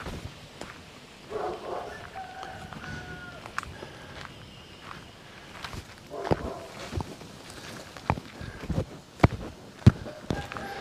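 Footsteps on a concrete path: irregular sharp taps and scuffs, more frequent and louder in the second half, the loudest just before the end. A brief faint call comes about a second and a half in, and again around six seconds.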